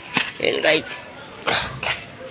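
A dog barking: three short barks, two close together early on and a third just over a second later.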